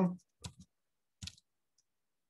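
The tail of a man's spoken word, then three brief faint clicks, the second right after the first and the third under a second later, heard through video-call audio.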